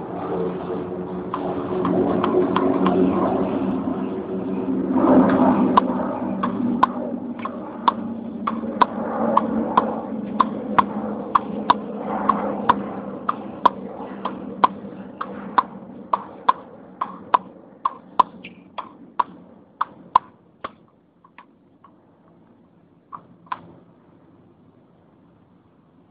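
Tennis ball being hit again and again against a practice wall with a Babolat Pure Drive Team racquet strung with Weiss Cannon Mosquito Bite 1.16 at 56/54 lbs: sharp pops of ball on strings and on the board, about two a second. The hits start about five seconds in after a steady low hum, die out about 21 seconds in, and two more come near the end.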